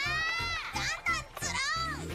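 A cartoon boy's voice cheering in high-pitched, joyful exclamations, about three of them, over background music with a steady beat.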